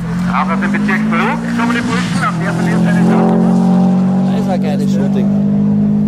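A Subaru Impreza rally car's flat-four engine running hard as it drives past, rising slightly in pitch and then holding a steady high note, loudest in the middle.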